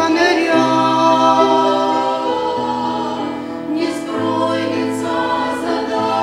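A small group of women singing a Russian-language Christian hymn in harmony into microphones, in long held notes.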